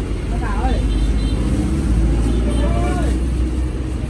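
Steady low rumble of motor traffic or a vehicle engine, heaviest in the middle, with faint voices in the background.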